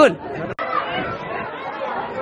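Only speech: one short spoken word at the start, a brief cut-out about half a second in, then chatter of several voices talking over one another in a crowded shop.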